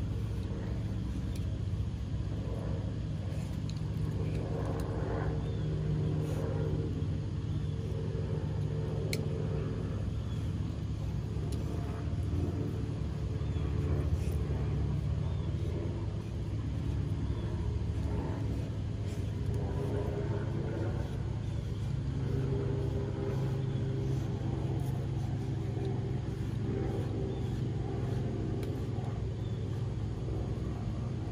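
A steady low hum and rumble runs throughout, from an unidentified motor or machine.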